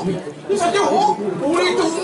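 Speech: a performer talking in a raised stage voice, starting after a short pause about half a second in.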